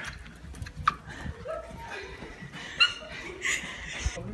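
A young woman laughing and giving short, high-pitched squeals, the loudest about three seconds in, with a few sharp clicks mixed in.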